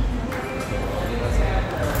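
Background music with a bass beat, with people's voices.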